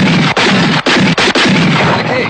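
A rapid run of gunshots in a western gunfight, several shots a second from more than one gun, over a dramatic orchestral score.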